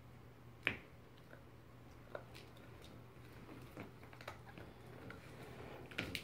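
A Shiba Inu puppy gnawing on a Petstages antler-style chew toy: faint, irregular clicks of teeth on the hard toy, the sharpest just under a second in.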